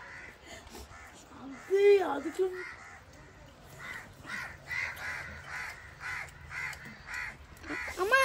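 Crows cawing in a quick run of repeated calls, about three a second, from about four seconds in until near the end.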